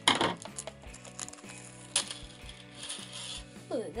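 Small metal clinks and wrapper rustling as a metal dog tag on a ball chain is taken out of its pack, opening with a sharp clatter. Background music plays underneath.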